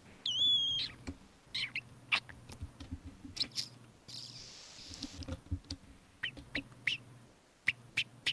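A short, high, wavering chirp just after the start, then a run of irregular computer mouse clicks and keyboard taps while a song is searched for online.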